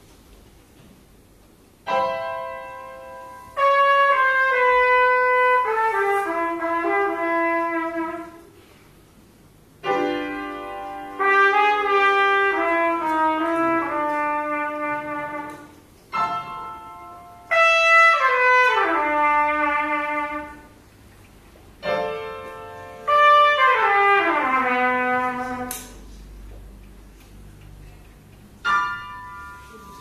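Trumpet playing four short phrases over piano chords. Each time a chord is struck, the trumpet comes in about a second later with a falling line.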